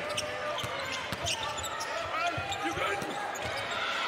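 Basketball arena game sound: a low murmur of crowd and bench voices with scattered thuds of a ball bouncing on the hardwood court and a few short sneaker squeaks.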